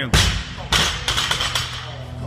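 A 75 kg barbell loaded with bumper plates is dropped to the floor. There is a heavy impact, then a second, ringing clatter about half a second later as it bounces and the plates and collars rattle.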